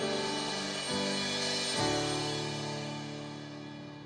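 Live band ending a song on acoustic guitars and bass: two last chords are struck about one and two seconds in and left to ring and fade away. A cymbal is rolled with mallets under them.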